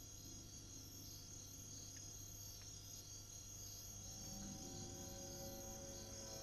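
Quiet background: a faint, steady layer of high-pitched tones, with soft held music notes fading in during the second half.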